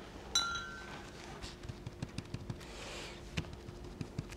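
A paintbrush put into a ceramic pot: one brief clink about a third of a second in that rings for about half a second. Faint light taps and handling sounds follow as a sponge is worked on the table.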